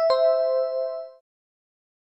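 Quiz 'correct answer' chime sound effect: two quick bell-like notes, the second lower, ringing for about a second before fading out.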